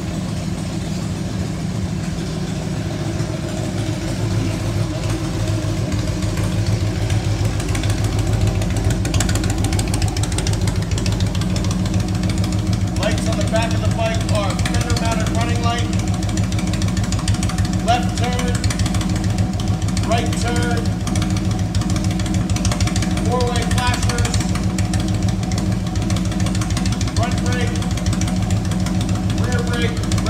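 Fuel-injected Twin Cam 88 V-twin engine of a 2000 Harley-Davidson Road King Classic idling steadily.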